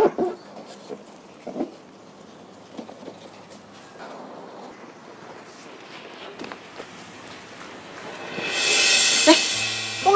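Sponges and cloths scrubbing over a soapy car body in short, scattered strokes. Near the end a loud hiss swells up and then fades.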